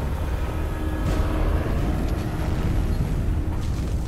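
V-22 Osprey tiltrotor prototype's rotors and engines, a steady low rumble, as the aircraft flies out of control just before crashing, its flight control system miswired.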